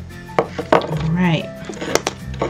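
A few sharp taps and knocks as an oyster shell and a plastic burnishing stick are handled and set down on a hard board, over background music.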